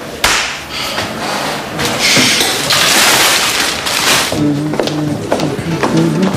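One sharp hand clap about a quarter second in, followed by background music: a bright swell of noise that peaks around the middle, then steady low held notes.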